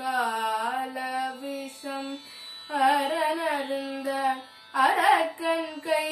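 A young girl singing solo Carnatic vocal, a pada varnam in Adi tala. Her voice slides and bends between held notes in gamaka ornaments, with short breath breaks about two seconds in and again near four and a half seconds.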